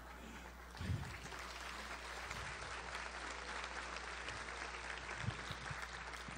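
Audience applauding, starting about a second in and running on steadily.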